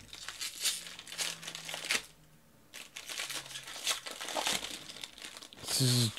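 Foil wrapper of a baseball card pack crinkling and tearing as it is opened, in two spells of crackling with a short pause between them.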